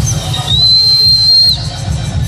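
A spectator whistling loudly: one high, steady whistle held for about a second, over the pulsing bass beat of the dance music.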